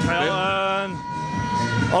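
Speech: a man's drawn-out, hesitant 'uh' a moment in, with a thin steady tone behind it that stops near the end, where his talk resumes.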